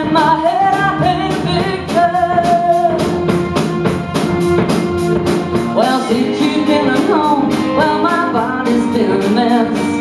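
Live band playing a soul-pop song: a woman singing lead over electric guitar and a drum kit keeping a steady beat.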